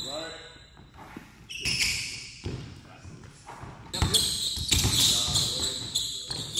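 Basketball bouncing on a hardwood gym floor, several separate thuds, echoing in a large hall, with voices in the background.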